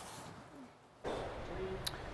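Quiet workshop room tone: a faint hiss that steps up about a second in to a steady, slightly louder shop background noise, with a small click near the end.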